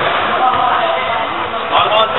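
Shouting voices and general crowd noise echoing in an indoor sports hall during a football match, with a ball thudding on the hall floor.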